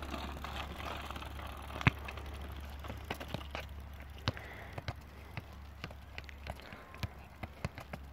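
Footballs being kicked and bouncing on asphalt: one loud thud about two seconds in, then scattered lighter thuds and taps through the rest, over a low steady rumble.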